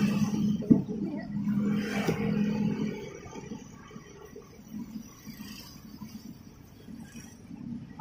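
A steady engine hum from a nearby vehicle runs for about three seconds, then dies away. A single sharp knock comes just under a second in. After that only faint, scattered knife work on the fruit is heard.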